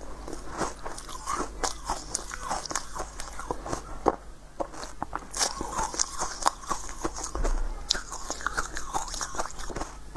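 Close-miked crunching and chewing of a crisp pink corn-cob-shaped treat: many sharp, irregular crackles as pieces are snapped off and bitten.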